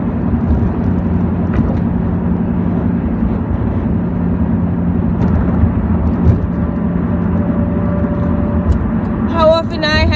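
Car interior while driving: steady low engine and road hum heard from inside the cabin. A woman's voice starts speaking near the end.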